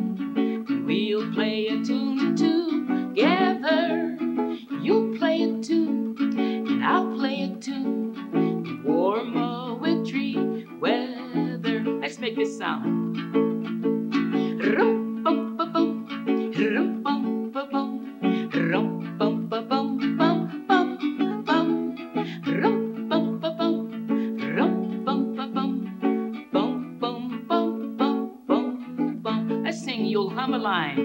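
Ukulele strummed in steady, continuous chords.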